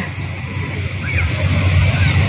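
Wind rumbling and buffeting on the microphone, uneven in strength, with faint distant sounds above it.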